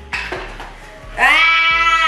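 A whisk scraping and tapping in a mixing bowl of cake batter. About a second in, it is overtaken by a loud, long note held on one pitch, sung or voiced.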